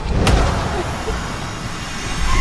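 A sharp hit about a quarter of a second in, then the steady low rumble of a car driving, heard from inside the cabin.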